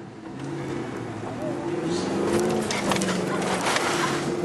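Range Rover Classic's V8 engine heard from inside the cabin, revving up and pulling hard under load, its pitch rising and wavering as the load changes. From about two seconds in, knocks and rattles come over it as the truck works over rough ground.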